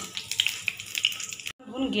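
Whole spices (panch phoron, dried red chillies, a bay leaf) sizzling in hot mustard oil, a dense scatter of fine crackles and pops. The sound cuts off abruptly about a second and a half in.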